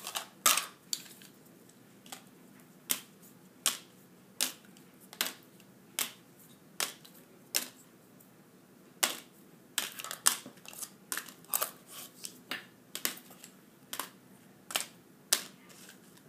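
Wax crayons being set down one at a time onto paper plates, making light sharp clicks. The clicks come about one every second at first and come faster in the second half as the crayons are dealt out.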